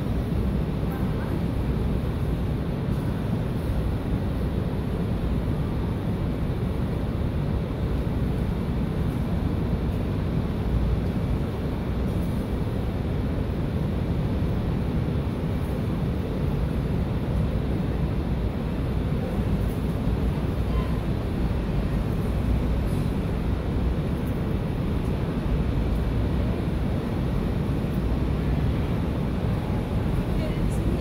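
Steady low rumbling background noise, even throughout with no distinct events.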